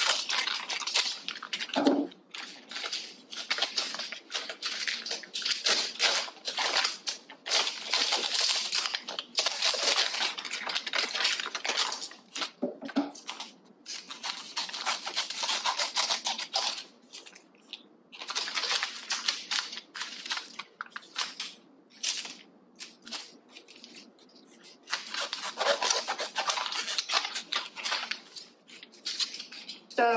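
Foil-lined potato chip bags crinkling as they are handled and snipped with scissors into thin strips, in irregular bursts with short pauses.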